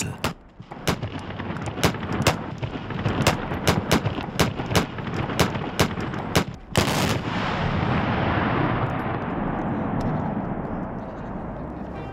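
Large-calibre handheld Böller, the black-powder salute mortars of the Christmas shooters, fired in a quick, ragged string of about twenty sharp bangs. About seven seconds in, a longer joint blast follows, and its rumble echoes and fades over the next few seconds.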